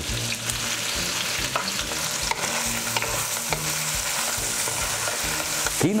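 A wooden spoon stirring thick, thickening green-corn angu in a heavy aluminium pot, over a steady sizzling hiss of cooking. The mash is starting to set and stick at the bottom of the pot.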